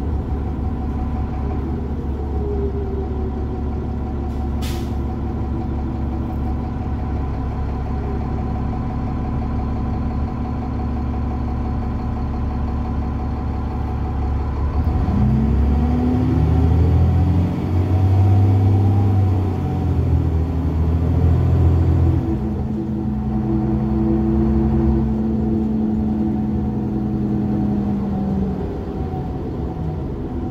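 Cummins ISC diesel engine and Allison automatic transmission of a 2001 New Flyer D30LF city bus, heard from inside the cabin: a steady low drone, then about halfway through the engine note climbs as the bus pulls away under power. The note dips briefly around two-thirds of the way through, like a gear change, then holds steady before easing off near the end. A single brief sharp sound comes about five seconds in.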